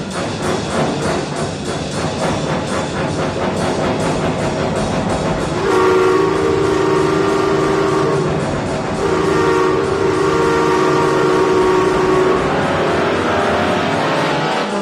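Wurlitzer theatre organ imitating a train: a fast, even chugging rhythm, then from about halfway two long held chords like a steam whistle blowing.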